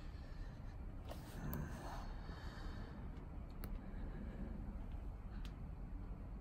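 A few short light clicks from handling and tapping a Snap-on diagnostic scan tool, over a faint steady low rumble in the bus cab.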